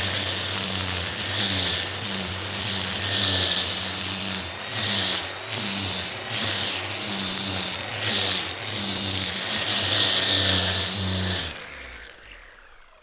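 String trimmer with a homemade disc head and thick line, running steadily while cutting grass, with a swish each time the head sweeps through the grass. It cuts off near the end and winds down with a falling tone.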